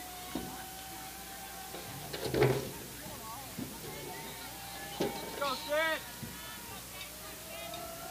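Players' voices shouting and chanting across a softball field, with a loud shout a couple of seconds in and a run of repeated calls near the middle. A single sharp pop about five seconds in, as the pitch smacks into the catcher's glove.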